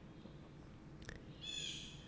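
Faint outdoor quiet with a bird calling once, high-pitched, in the last half second.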